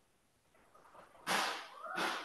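A person's breath rushing onto a close microphone: a sudden, loud breathy gust a little over a second in that fades away within about half a second.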